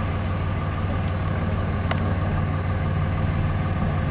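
Car engine running steadily as the car rolls slowly along, heard from inside the cabin as a low, even hum. A brief click about two seconds in.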